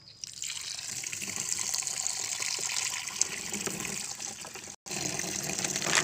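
Water from an outdoor tap pouring into the plastic tank of a knapsack sprayer through its strainer basket, filling it. The tap is turned on about a quarter second in and the water runs steadily after that, with a momentary gap in the sound near the end.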